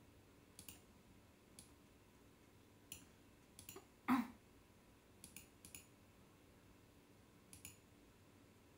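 Faint, scattered clicks at a computer while editing, several coming in quick pairs, with one louder, fuller knock about four seconds in.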